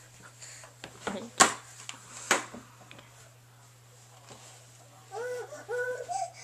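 A few sharp knocks from a plastic toy bin and toys being bumped as a toddler clambers over it, then the toddler's high-pitched voice vocalizing near the end.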